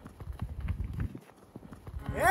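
Horse-hoof clip-clop sound effect: a quick, uneven run of hoofbeats that thins out near the end.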